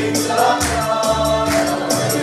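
Mixed choir of young men and women singing a Christmas song together, with held notes that change about every half second.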